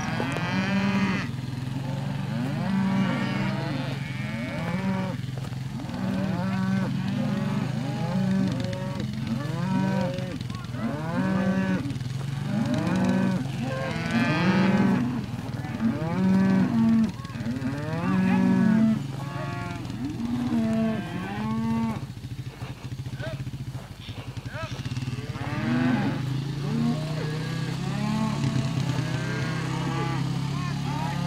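A herd of beef cattle mooing almost without pause as they are driven along, many cows calling over one another, each call rising and falling over about a second. The calls thin out for a couple of seconds past the middle, then pick up again.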